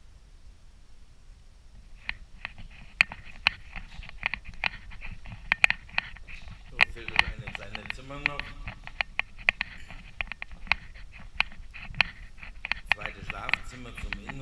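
Footsteps on a laminate floor in an empty room: a quick, irregular run of sharp clicks that starts about two seconds in.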